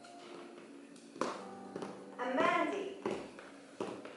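High-heeled shoes clicking on a stage floor as a woman walks, a few separate sharp steps, with a brief stretch of voice about halfway through.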